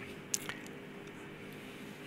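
A short pause in speech: faint room tone with one brief wet click about a third of a second in and a fainter one just after, a lip or mouth click close to a handheld microphone.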